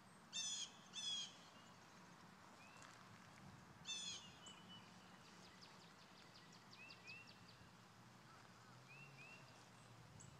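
A bird calling outdoors: three short calls, the first two about a second apart and the third about three seconds later, with a few faint chirps from smaller birds between them over quiet background.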